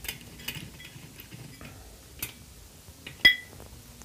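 A few light clicks and one sharper, briefly ringing metal clink about three seconds in: metal tools being handled on a kart engine as the spark-plug-thread insert is set in place.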